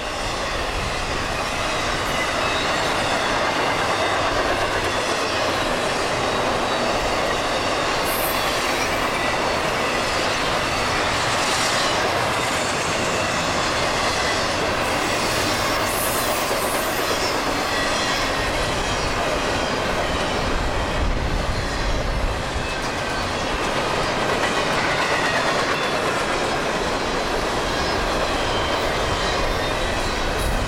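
Intermodal freight train cars rolling past at speed close by: a loud, steady rush of steel wheels on rail.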